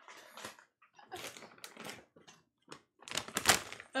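Whole almonds rattling and clicking as they are poured and scooped into a glass measuring cup. The clatter comes in short runs and is loudest about three seconds in.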